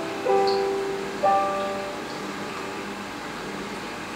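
Two chords played on a keyboard instrument, struck about a quarter second and a second in, then left ringing and slowly fading.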